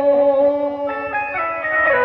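Instrumental break in a devotional song: an organ-like keyboard holds a steady drone, and from about a second in it plays a short run of notes stepping in pitch.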